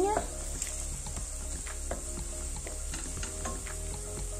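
Chopped onion and leek sautéing gently in olive oil in a steel pot, sizzling steadily as a wooden spoon stirs them, with small scrapes and taps of the spoon against the pot. This is the refogado stage, with the onion already softened.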